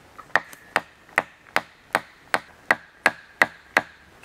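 About ten sharp, evenly spaced blows, roughly two and a half a second, of a hammer driving a felling wedge into the saw cut at the base of a western hemlock, each strike ringing briefly.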